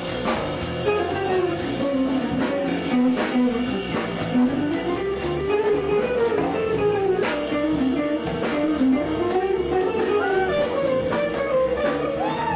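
Live jazz band music: a hollow-body electric guitar plays a winding single-note melody over the band's accompaniment.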